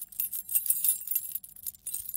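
Recorded sample of a bunch of keys jingling, played back unprocessed: an irregular run of bright metallic clinks.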